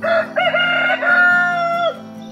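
Rooster crowing: a short opening note, then one long crow held for about a second and a half before it breaks off.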